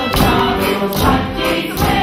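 A group of voices singing a folk song together, with a fiddle playing along.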